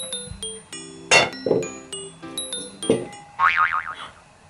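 Playful background music of short, quick notes at changing pitches, cut through by three short noisy hits and, near the end, a wobbling pitched effect.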